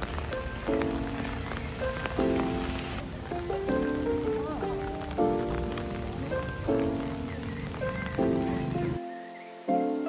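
Steady rain falling on wet pavement, heard under soft background music with slowly changing chords. The rain sound cuts off about a second before the end, leaving only the music.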